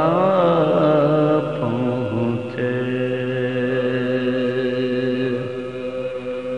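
A man's voice chanting soz, the melodic Urdu elegy recitation. The pitch wavers in ornamented glides for the first second or so, then settles into one long held note.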